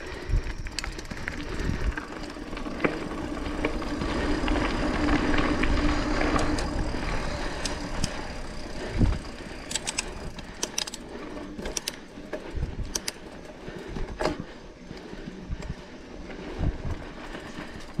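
Mountain bike rolling downhill on a dirt and loose-gravel track: a steady rushing rolling noise that builds over the first few seconds, then sharp clicks and rattles from the bike over rough ground from about ten seconds in.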